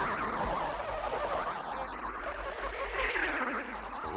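Cartoon sound effects of swirling ghost creatures: many overlapping high, wobbling squeals and warbles.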